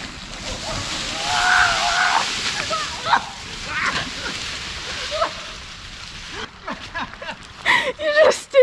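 Rustling and scraping of loose dirt and dry leaves as a person slides and scrambles quickly down a steep forest slope, loudest in the first couple of seconds and dying away by about six seconds.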